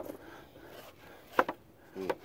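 White pine boards knocking against each other as they are tipped back one at a time in a plastic milk crate: one sharp wooden clack about a second and a half in and another at the end.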